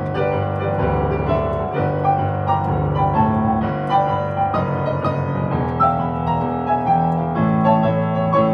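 Solo piano playing a hymn arrangement: flowing chords over a moving bass line.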